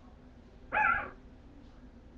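A bulldogge puppy gives one short, high cry that wavers in pitch, lasting about a third of a second, just under a second in.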